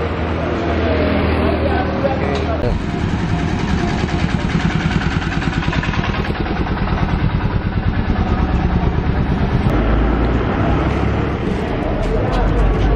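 A motor vehicle engine idling close by, with a fast, even throb from about three seconds in.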